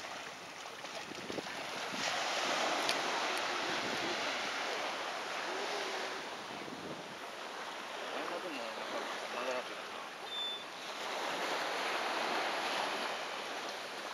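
Small waves washing onto a beach: a steady surf wash that swells twice, about two seconds in and again around eleven seconds.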